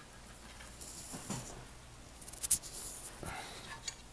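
Hands working wires and connectors inside a wooden speaker cabinet: soft rustling and fiddling, with a few sharp clicks about two and a half seconds in.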